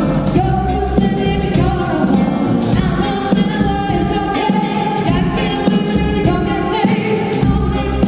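A woman singing lead into a microphone over a live band, her voice holding and bending long notes, with a drum kit striking throughout and bass underneath.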